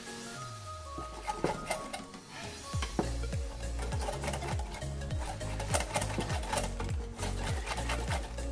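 Metal whisk beating thick cake batter in a glass bowl, with quick clicking strokes against the glass. Background music plays underneath, and a steady low beat comes in about three seconds in.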